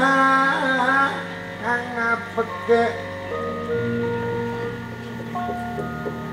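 Javanese gamelan music accompanying a shadow-puppet play: sustained ringing metal tones and short melodic notes, with a wavering singing voice for about the first second.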